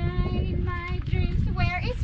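A high-pitched singing voice with long held, wavering notes, over a steady low rumble.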